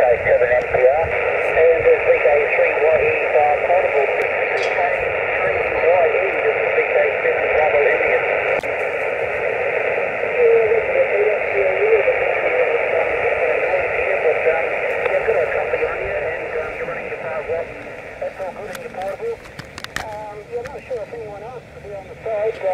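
Receiver audio from a Yaesu HF transceiver on 80 m lower sideband: band noise with indistinct voices from other stations. It fades down over the last few seconds as the kite-held wire antenna is brought down toward the ground, with a few sharp clicks near the end.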